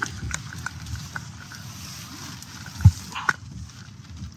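Inside a stationary electric car's cabin: a low steady rumble with scattered light ticks, a dull thump about three seconds in and a sharp click just after it.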